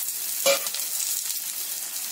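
Sliced onions, dried red chillies and whole spices sizzling in hot ghee in a kadai, stirred with a metal spatula, with a steady hiss of frying. One brief louder sound about half a second in.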